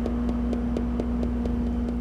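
A steady mechanical hum with a low drone and one held tone, with a faint, light ticking about five times a second.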